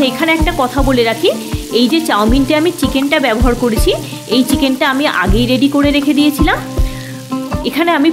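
Background music with a steady beat and a melody, over noodles sizzling as they are stir-fried in a nonstick wok with a spatula.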